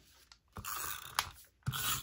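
Paper being handled and rustled on a cutting mat: two short raspy bursts, one about half a second in and one near the end, with a single sharp click between them.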